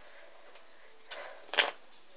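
Playing cards being handled and squared on a cloth mat: a faint rustle about a second in, then a louder, short card swish.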